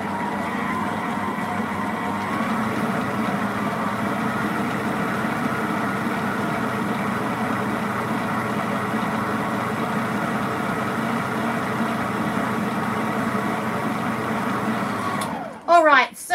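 Electric stand mixer running steadily, its flat paddle churning a damp, powdery bath-bomb mixture of bicarb soda in a stainless steel bowl. The motor cuts off near the end.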